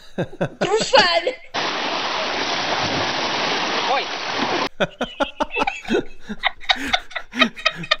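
Voices and laughter, then about three seconds of steady rushing noise of shallow water splashing at a shoreline, starting and stopping abruptly, followed by more laughter and chatter.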